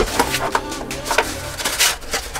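Kitchen things being taken out of a drawer by hand: several knocks and clatters, and the rustle of a stack of paper plates.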